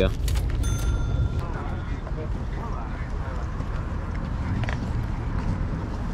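Outdoor flea-market ambience: faint background voices over a steady low rumble, with a short steady high-pitched tone lasting about a second, starting about half a second in.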